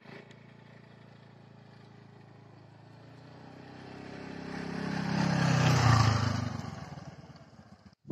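A motor scooter's small engine running as it rides toward and past the listener: it grows steadily louder, is loudest about six seconds in, then fades away as its pitch drops on passing.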